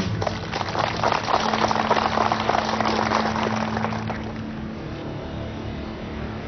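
A crowd clapping, a dense patter of many hands that dies away after about four seconds, over a held note of background music.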